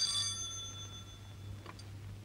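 A telephone bell ring dying away over about a second and a half.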